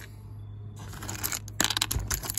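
Clicks and rattles of small metal finds and a clear plastic compartment box being handled, starting about a second in, over a faint low hum.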